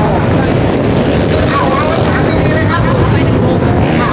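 Motorcycle engines running, a steady loud drone, with faint crowd voices over it.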